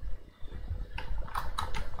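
Computer keyboard keys being pressed: a handful of short clicks in the second second, over a faint low room hum.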